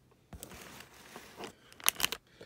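Plastic candy wrapper with a clear window crinkling as it is handled, faint at first, then a few sharp crackles near the end.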